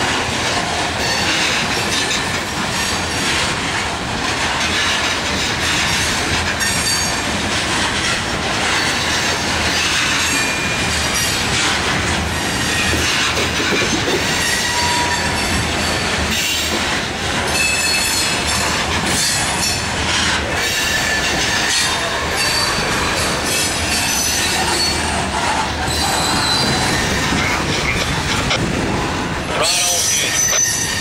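A freight train of covered hopper cars rolls slowly past close by. The steel wheels clatter over the rail joints, with short high-pitched squeals from the wheels now and then.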